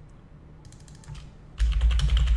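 Typing on a computer keyboard: a few light keystrokes, then from about one and a half seconds in a quick run of louder keystrokes over heavy low thuds.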